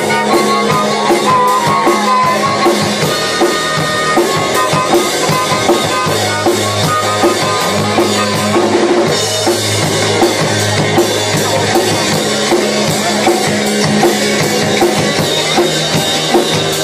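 Live rock and roll band playing an instrumental stretch. The drum kit keeps a steady beat of about two strokes a second under bass and electric guitar, and a harmonica is played through the vocal mic.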